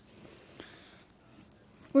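A quiet pause between sentences of a speech at a microphone: faint room tone with a soft breath and two faint ticks.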